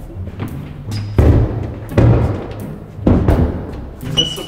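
Background music with low, heavy drum hits about once a second.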